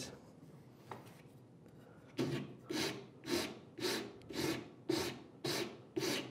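Flat file scraping across the end of a small sapele block clamped in a vise, rounding it over: about seven even strokes, roughly two a second, starting about two seconds in.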